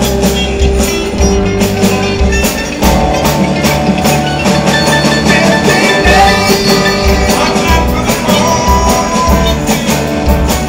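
Live band playing an instrumental passage with a steady beat: banjo, electric bass, drum kit, congas and electric guitar together, with no vocals.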